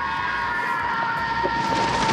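Steady jet-like whine of a few held tones over a rush of air: the sound of the heroes flying.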